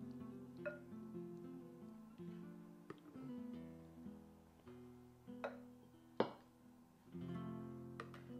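Background music: an acoustic guitar strumming chords, with a few sharper strums standing out.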